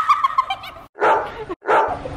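A young woman's high-pitched excited yells, broken into short sharp yelps with two abrupt silent gaps between them.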